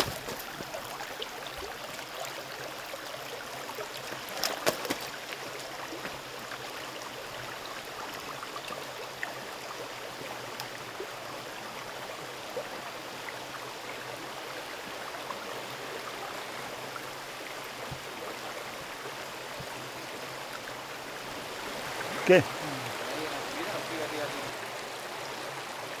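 Shallow rocky stream running over stones, a steady rush of water. A few sharp knocks stand out about four and a half seconds in.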